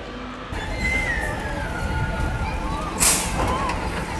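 Steel roller coaster train running past overhead with a low rumble, a falling high squeal around a second in, and a short loud hiss about three seconds in.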